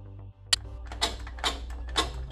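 Background electronic music with a steady beat stops about half a second in. Then a sharp click and a Ryobi cordless angle grinder's metal-cutting wheel cutting through a rusted toilet-seat bolt in short bursts about twice a second, over a low hum.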